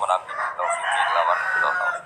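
A rooster crowing once: one long call lasting almost two seconds that ends abruptly.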